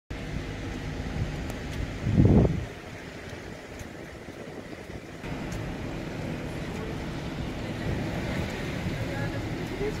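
Outdoor street ambience: a steady low rumble of distant traffic with wind on the microphone, and a brief loud low buffet about two seconds in. Faint voices come in toward the end.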